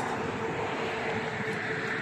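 A steady, distant mechanical drone with a faint held tone in it, over outdoor background noise.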